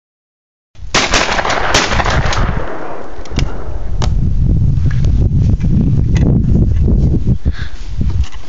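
Break-action over-under shotgun fired at a clay target: two sharp reports less than a second apart about a second in, each trailing off in an echo. Then a few sharp clicks and a steady low rumble.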